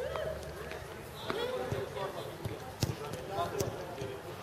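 Footballs being kicked during passing practice: several sharp thuds, the loudest about three seconds in, over players shouting and calling to each other.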